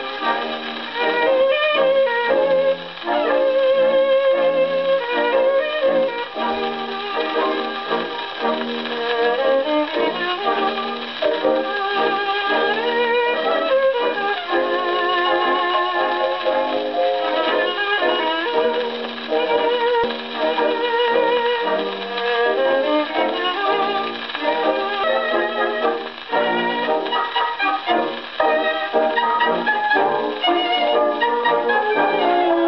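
A tango played by a dance orchestra from a record on an EMG horn gramophone, with violins leading the melody with vibrato and brass and woodwind joining in.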